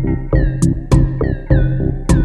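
Electronic music: synthesizer notes that each slide down in pitch at the start, over a steady low bass pulse and drum machine hits with sharp hi-hat ticks.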